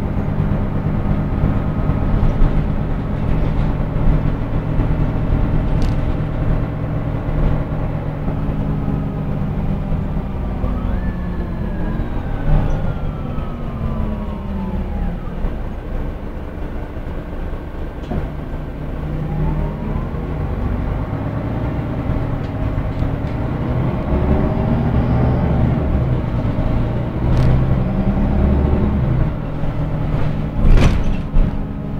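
City bus heard from inside the passenger cabin: diesel engine and drivetrain running with a steady low hum. A whine falls in pitch as the bus slows about a third of the way in, then rises again as it speeds up, with a few light knocks and rattles from the body.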